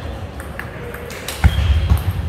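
Table tennis rally: the celluloid-type ball clicks sharply off the rubber-faced bats and the table several times, with the loudest click about one and a half seconds in. That click is followed by a heavy thud of a player's foot on the hall floor.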